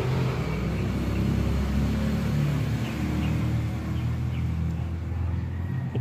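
Low, steady rumble of a motor vehicle's engine running nearby. It swells in the middle and eases off near the end.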